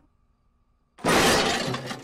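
Cartoon sound effect of something shattering: a sudden loud crash about a second in that dies away over the next second.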